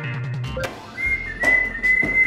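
A steady, high whistled tone that starts about a second in and is held without a break, over faint background music.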